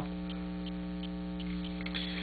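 Steady electrical mains hum on the recording, a low buzz with several overtones, with a few faint ticks.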